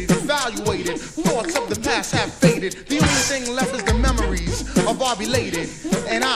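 Old-school hip hop record playing: rapping over a drum beat, with a deep bass swell about four seconds in.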